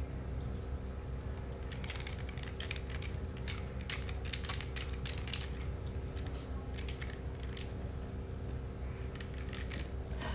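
Light plastic clicking and clatter of linked toy rings being handled, in quick irregular runs from about two seconds in until near the end, over a steady low room hum.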